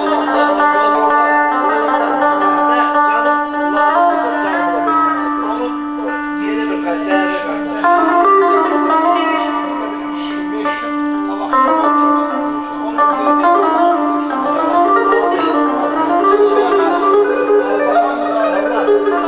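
Electric guitar playing a fast, ornamented melody in Azerbaijani folk style, accompanied by a Korg Pa800 arranger keyboard holding one steady low drone note throughout.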